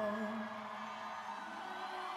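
Gospel-style pop song in a quiet break: a held vocal note fades out in the first half second, leaving a soft sustained chord underneath.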